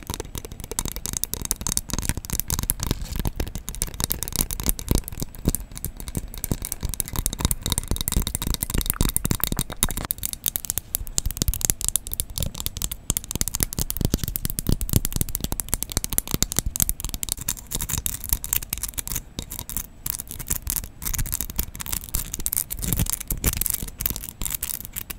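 Long fingernails scratching and tapping a textured snowflake ornament held right at the microphone: a dense, fast, continuous run of crisp scratches and clicks.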